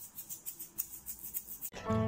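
A shaker being shaken in a quick, even rhythm, about six rattles a second, cutting off abruptly near the end.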